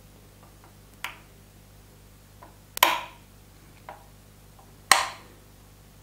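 Plastic wall-type light switches, one-way and two-way (SPDT), being switched off one after another: three sharp clicks about two seconds apart, the second and third loudest.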